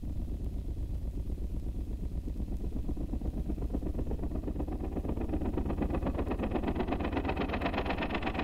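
Recorded train sound effect: a fast, even chugging pulse that builds slightly in loudness.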